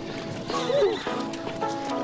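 A horse whinnies once, a short wavering call about half a second in, over background music.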